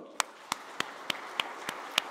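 Church congregation applauding, with sharp claps at an even pace of about three a second standing out above the crowd's clapping.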